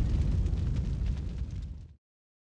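Cinematic title-card sound effect: the tail of a deep boom, a low rumble with hiss that fades away and cuts off abruptly just before the end.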